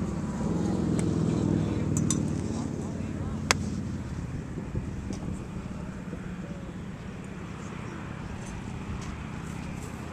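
A golf iron striking a ball off a rubber tee on a driving-range mat: one sharp click about a third of the way in, after a couple of fainter ticks. A steady low rumble of distant traffic and wind runs underneath.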